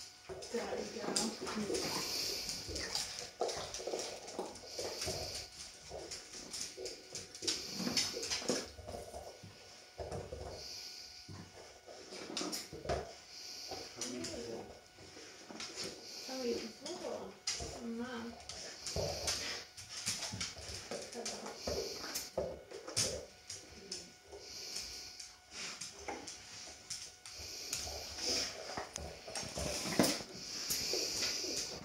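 A Dalmatian chewing and gnawing at a rubber treat-dispensing toy, working gravy-bone treats out of it, with irregular clicks and knocks as the toy moves on the tiled floor.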